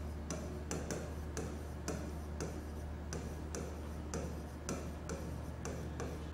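Pen writing on a board: short sharp ticks and scrapes, about three a second, as letters are written, over a steady low hum.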